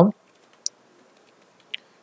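Computer keyboard keys clicking during typing: two short, sharp clicks about a second apart, the first louder.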